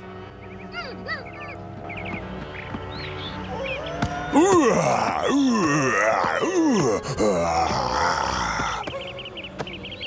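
Cartoon animal cries over background music: quiet at first, then a quick run of loud rising-and-falling vocal calls from about four seconds in, fading out near the end.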